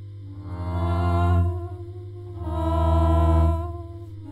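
Violin shifted down two octaves by a whammy pedal and played through a vintage bass amp, holding low sustained notes that change pitch. Over it, a layered wordless voice hums two swelling phrases, the first about half a second in and the second about two and a half seconds in.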